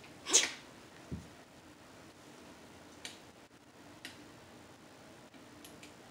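Quiet room tone broken about half a second in by one short, sharp, breathy burst from a person, followed just after a second by a soft low thud and a few faint ticks.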